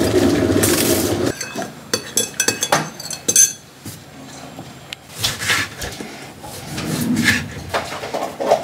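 Glass electric kettle boiling with a steady rumble that stops abruptly about a second in. It is followed by scattered clinks of a metal spoon against a ceramic mug and other kitchenware being handled.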